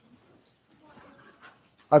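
Quiet room tone with a few faint, indistinct sounds, then a person's voice starts speaking right at the end.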